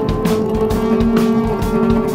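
Music from a new-age acoustic song: a drum kit keeping a steady beat under sustained held tones.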